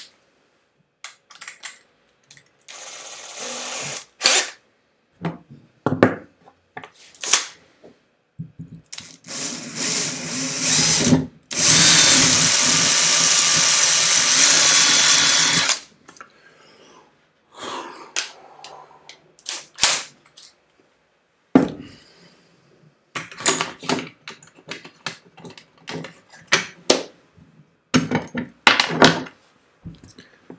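Handheld power drill boring a larger hole through an acrylic stopper: a short run, a second run that builds up, then a loud steady run of about four seconds. Sharp clicks and knocks of parts being handled follow.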